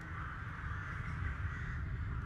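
A crow cawing, harsh and drawn out, over a steady low rumble.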